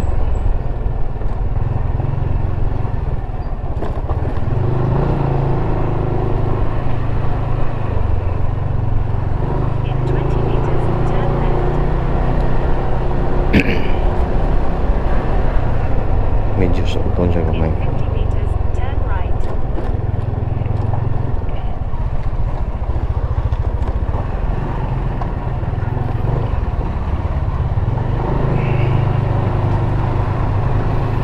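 Motorcycle engine running at low riding speed, heard from the bike itself, its note stepping up and down a few times with the throttle. A single sharp click comes about halfway through.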